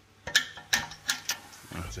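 Flat screwdriver working the toothed adjuster wheel of a rear handbrake shoe. It gives a few sharp, irregular metal clicks as it catches the adjuster's teeth, tightening the handbrake.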